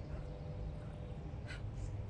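A woman's breathing as she dances, picked up close by an earbud microphone, with one short breath about one and a half seconds in, over a low steady rumble.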